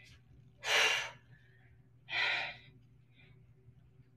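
A woman exhaling hard twice, about a second and a half apart, breathing with the effort of bicycle crunches.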